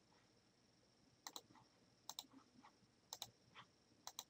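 Faint computer mouse clicks: three quick double clicks about a second apart, as list entries are selected and permission checkboxes ticked.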